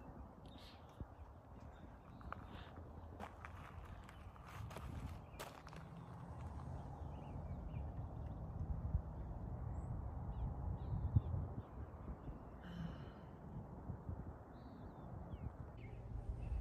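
Faint open-air ambience: a low, steady rumble that swells a little mid-way, with scattered light clicks and a few faint bird calls.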